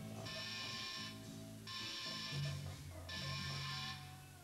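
Live metal band playing a heavy distorted electric-guitar riff in stop-start blasts: held chords of about a second each, broken by short breaks, as a song gets under way before the vocals come in.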